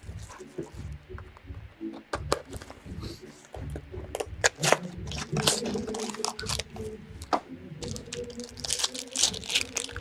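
Plastic wrapping and a cardboard card box being torn open and handled, giving a run of crinkling, tearing and sharp clicks that grows busier about halfway through.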